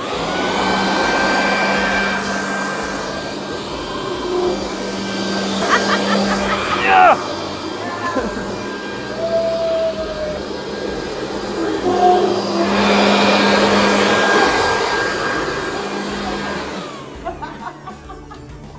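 Corded electric leaf blower running steadily, blowing air down into the skirt of a homemade ride-on hovercraft to float it. It starts at once, swells and eases a little as it goes, and dies away near the end.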